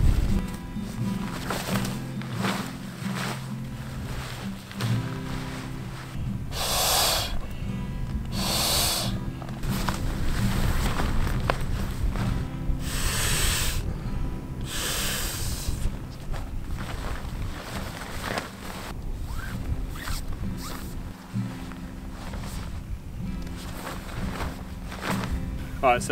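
Several long, hard breaths blown by mouth into the valve of an inflatable camping pillow, four of them through the middle, over rustling of swag canvas and sleep gear. Background music with steady low notes runs underneath.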